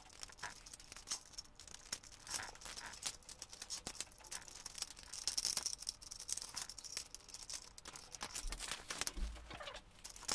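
Plastic Lego pieces clicking and rattling as a Lego engine model is pulled apart by hand: a dense run of small clicks throughout, busiest about five to six seconds in.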